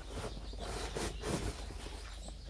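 Small cardboard boxes being picked up and handled, with a few light knocks and scrapes of cardboard.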